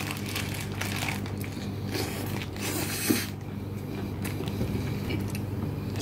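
A person biting into and chewing a crunchy fried-chicken burger close to the microphone, with irregular crunches throughout. The burger's paper wrapper rustles as he handles it.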